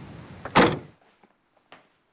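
The tailgate of an Opel estate car slammed shut once, about half a second in, with a short click just before the main bang.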